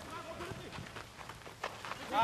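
Live pitch sound of an amateur football game on dirt: players' running footsteps and scattered knocks of the ball being kicked, the sharpest about one and a half seconds in, with faint voices calling in the background.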